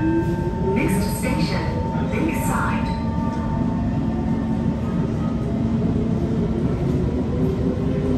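C151 metro train accelerating away from a station, heard from inside the car: the GTO traction motor drive whines and climbs in pitch over the rumble of wheels on rail.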